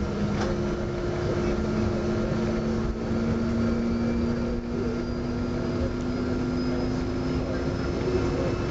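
Cabin noise of a Boeing 777 with GE90-85B turbofan engines rolling along the runway after touchdown: a steady rumble with a low hum that slowly rises in pitch.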